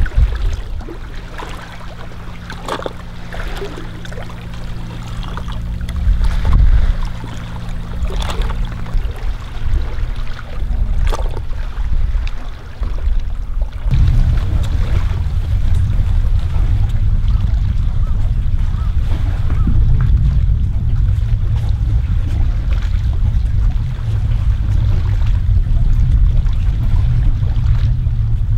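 Sea water lapping and splashing against shoreline rocks, with a steady low motor hum that stops about nine seconds in. From about halfway, wind rumbles heavily on the microphone.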